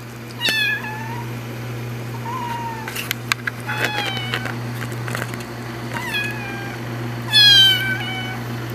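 A cat meowing repeatedly: about five high-pitched mews that fall in pitch, the loudest near the end.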